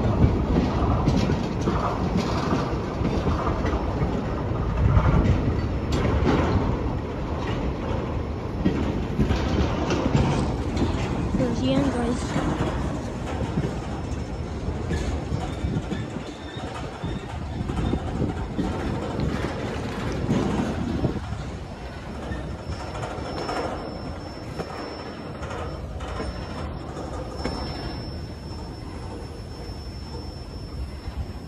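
Freight train of railroad tank cars rolling past, a continuous rumble of the cars with irregular clicks and knocks from the wheels on the rails. It grows somewhat quieter over the second half.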